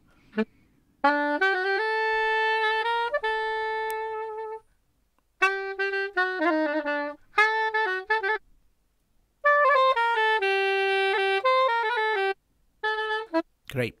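Sampled saxophone loops from BeatHawk's Balkans pack previewed one after another. There are four short melodic sax phrases with brief silences between them. The first ends on a long held note, and the last is cut off after a moment.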